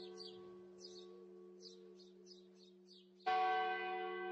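Church bell ringing. At first a fading hum with short high bird chirps above it, then struck again about three seconds in, its many-toned ring slowly dying away.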